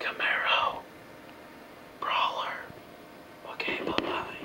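A person whispering three short phrases, breathy and unvoiced.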